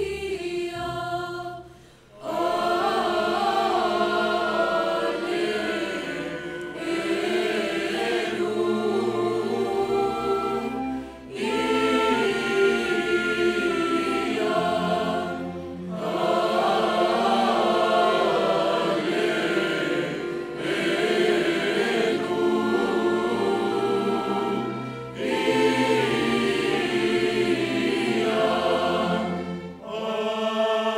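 Mixed choir singing with a small orchestra of strings and woodwinds. The music runs in long sustained phrases, with brief breaks between them: near the start, and then every four to five seconds.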